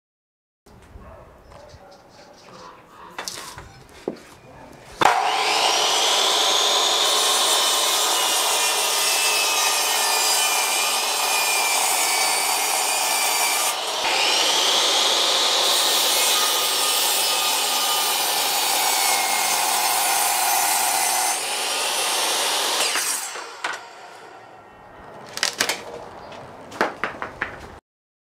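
Powered miter saw cutting through a round wooden post in two long passes, its whine dropping in pitch as the blade works through the wood. Light knocks of the post being handled come before the cuts and a few clicks after them.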